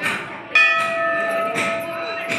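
Small metal temple bell struck about half a second in, then ringing on with a steady, slowly fading tone. A sharper knock comes about a second later.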